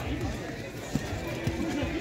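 Amateur football players calling out to each other while running on artificial turf, with one drawn-out shout in the second half and a couple of soft thumps.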